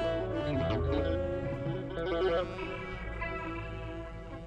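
A live rock band playing an instrumental passage, led by an electric guitar through effects, with many quick notes moving in pitch over a steady low bass.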